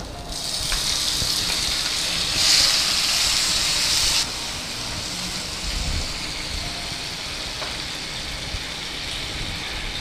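Food sizzling loudly in hot oil in a frying pan as tomato goes in, surging just after the start and loudest for a couple of seconds. About four seconds in it drops suddenly to a softer, steady sizzle while the pan is stirred.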